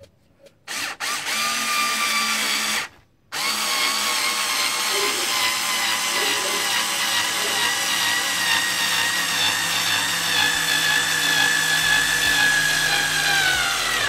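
Performance Power PSD36C-LI 3.6 V cordless screwdriver driving a 4x60 wood screw into fir: a short run, a brief stop about three seconds in, then one long run to the end. The motor's whine slowly falls in pitch as it struggles a bit under the load of the long screw, then stops.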